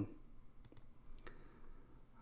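A few faint clicks from a computer mouse over quiet room tone.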